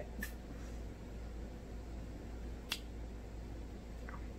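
Quiet room tone with a steady low hum, broken once, about two-thirds of the way through, by a short sharp click.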